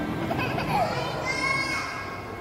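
A toddler's excited vocalizing: a short falling cry, then a high held squeal in the second half.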